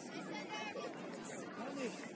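Several distant voices talking and calling at once, players and spectators around a soccer pitch, with no single clear speaker.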